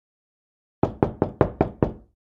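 A rapid series of six knocks, about five a second, starting just under a second in, each sharp and quickly fading.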